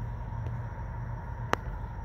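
Steady low engine rumble with a faint steady tone above it, and one sharp click about one and a half seconds in.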